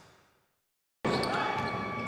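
A fading whoosh, then a brief silence, then basketball-game sound cuts in abruptly about halfway through: a basketball being dribbled on an indoor court, over crowd noise and voices in the hall.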